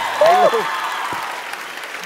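Studio audience applauding a correct answer, the clapping fading away steadily, with a short vocal "uh" about half a second in.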